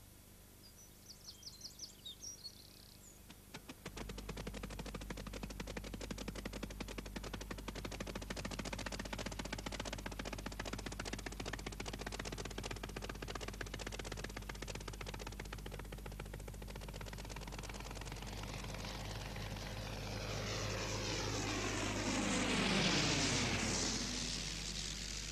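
Early propeller aeroplane's piston engine running with a fast, rapid-firing clatter. It grows louder and sweeps past near the end, its pitch shifting as it flies by.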